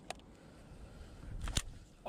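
Casting with a baitcasting rod and reel over open water: a low, steady rumble of wind on the microphone, a faint click at the start and a sharper click about one and a half seconds in.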